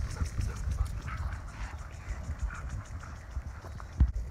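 Dogs panting and scuffling about at play, with a steady low rumble underneath.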